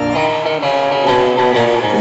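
Live pop-rock band playing an instrumental passage led by strummed electric guitar, the chords changing about every half second.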